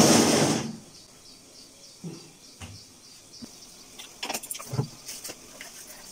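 A brief loud rustling whoosh at the start, then a few light clicks and knocks of kitchen things being handled while milk is readied for a pot of tea on a gas stove.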